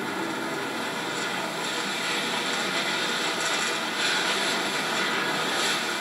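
Steady running noise of a passenger train heard from on board: an even rushing hiss over a low rumble, growing slightly louder in the second half.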